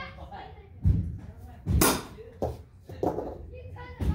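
A thrown metal blade hits a wooden target board, giving sharp knocks: one about a second in, a louder one just under two seconds in, and a lighter one soon after.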